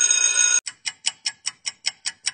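Clock ticking sound effect: sharp, even ticks about five a second, starting about half a second in after a brief steady high-pitched tone.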